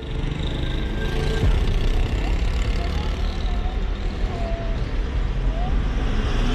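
Road traffic: a steady low rumble of vehicles running on the street.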